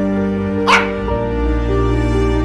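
Slow, soft background music with sustained notes, broken just under a second in by a single short dog bark.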